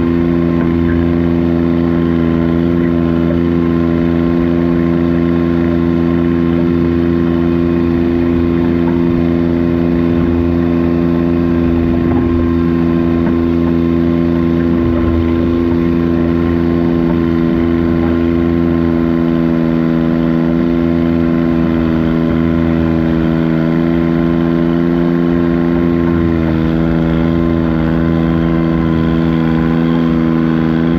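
Diesel engine of a pulling garden tractor running under load as it drags the sled, holding one steady pitch with a slight waver near the end.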